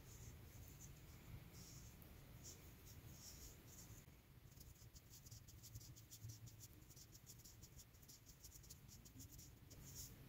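Faint scratching and rustling of a crochet hook pulling yarn through stitches as half double crochets are worked, with a quicker run of small ticks in the second half.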